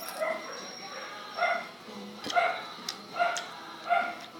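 A dog barking repeatedly, five short barks a little under a second apart.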